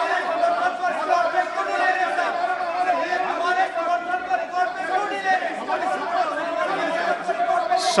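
Many members of the house talking and calling out at once, a steady din of overlapping voices in a large chamber with no single speaker standing out.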